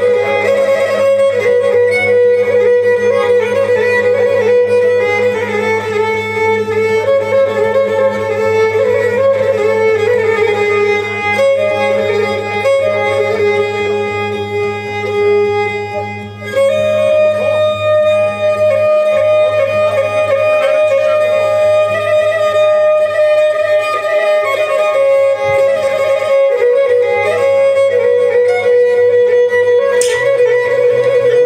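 Amplified Pontic lyra bowing an ornamented folk melody in long, sliding notes. The melody dips briefly about halfway through, then resumes a little higher.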